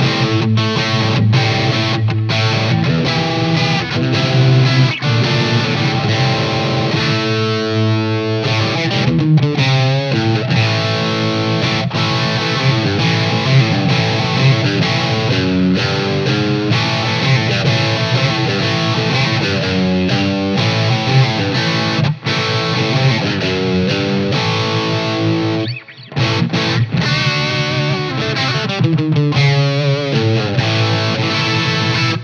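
Electric guitar, a Fender Telecaster, played through an Xotic BB Preamp overdrive pedal for a Marshall-style crunch, alone and stacked with a Greer Lightspeed driving into it. It runs through a miked valve amp and 2x12 cabinet, with chords and lines ringing out and a short break near the end.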